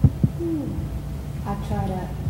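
Steady low room hum with two dull thumps right at the start, then short wordless vocal sounds from a person, one about half a second in and another near the end.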